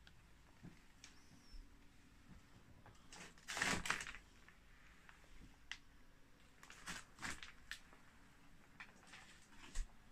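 Quiet room with scattered small clicks and rustles from someone moving through debris-strewn rooms, the loudest a brief rustle about three and a half seconds in.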